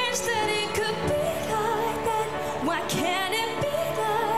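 A woman singing a slow pop ballad solo, live, with wavering held notes over a steady accompaniment.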